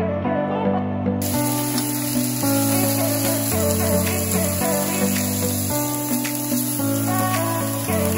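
Electronic background music with a bass line stepping to a new note about once a second, and a steady hiss that starts abruptly about a second in and stays under the music.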